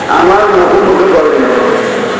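A man's voice preaching in Bengali through a microphone and loudspeaker, drawn out in long, sung tones.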